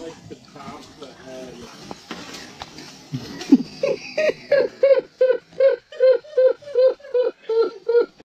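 A person laughing hard: a long run of high-pitched 'ha' pulses, about three a second, starting about four seconds in after some low, indistinct voices.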